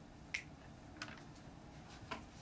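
Two sharp clicks over faint room tone, the first about a third of a second in and the louder one, the second about two-thirds of a second later.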